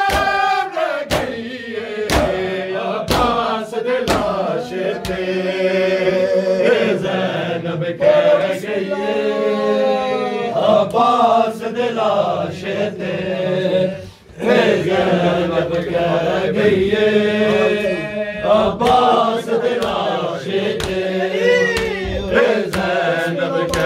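Men's voices chanting an Urdu/Punjabi nauha, a Shia lament, in a group. Sharp hand slaps of chest-beating matam keep a regular beat at the start and again near the end.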